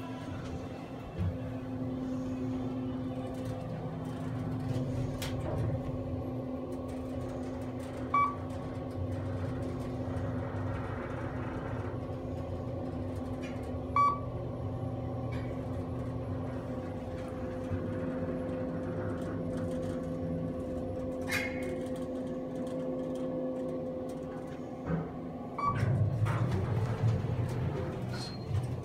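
KONE EcoSpace traction elevator car travelling up, a steady hum throughout. A short beep sounds about 8 s in and again about 14 s in as it passes floors. Near the end the car arrives and the doors open.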